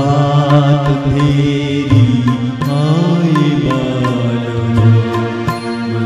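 A man singing a slow Hindi film song in long, wavering held notes over an instrumental backing track with a steady low drone and soft, regular percussion strokes.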